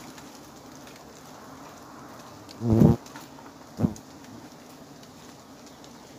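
Steady hum of a giant honeybee colony clustered on its open comb. Two short, loud, low-pitched sounds break in about three seconds in, the second shorter and about a second after the first.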